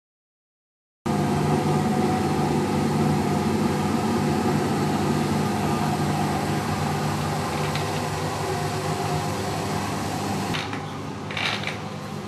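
Front-loading washing machine running: a loud steady mechanical hum and whir that starts abruptly about a second in and eases near the end, where a few light clicks come through.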